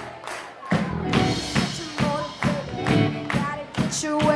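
Live rock band playing: electric guitar, keyboard and drum kit, with a steady beat of about two drum hits a second.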